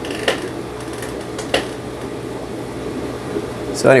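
Steady aquarium fish-room background: an air-driven sponge filter bubbling, over a low, even hum of the kind an aquarium air pump makes. Two small clicks come early on, and a spoken word cuts in at the very end.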